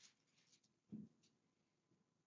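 Near silence: quiet room tone, with one faint, brief low sound about a second in.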